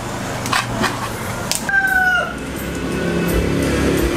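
A rooster crowing once, a short held call that falls slightly in pitch about halfway through, after a few sharp metal clinks of a hook against the skewers of a clay jar oven.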